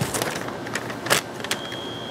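A paper instruction sheet rustling and crinkling in the hands as it is unfolded and handled, in several short rustles, the loudest just after a second in. A steady high-pitched tone starts about one and a half seconds in.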